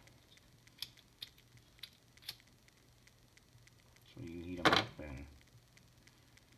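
A few faint, sharp clicks from small plastic figure parts being handled, then about four seconds in a brief burst of voice with a sharp click inside it.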